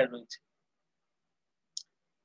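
A voice trails off, then silence broken by two short, faint, high clicks: one just after the speech and one near the end.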